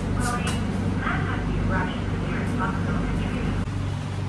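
A steady low mechanical hum, with indistinct voices over it.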